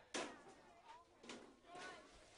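Near silence: a quiet room with faint voices and a brief sharp noise right at the start.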